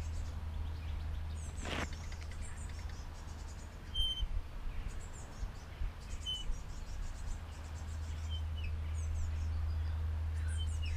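Small birds chirping in short high calls at intervals over a steady low rumble. There is a brief swish about two seconds in and a few soft low knocks around four seconds in.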